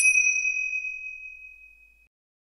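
A single bright chime sound effect, struck once and ringing out, fading steadily over about two seconds, as part of an animated logo end card.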